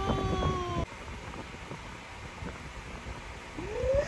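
A toddler's high, held vocal sound, sliding down a little in pitch, cut off abruptly about a second in; then faint low knocks, and near the end a short rising vocal sound.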